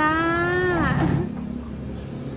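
A woman drawing out the final syllable "จ้า" ("jaa") of a spoken goodbye in one long, steady-pitched call that falls away after about a second, followed by a low rumble in the background.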